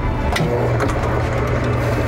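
Electric deli meat slicer running with a steady low hum while cured meats (hot capicola and calabrese) are sliced.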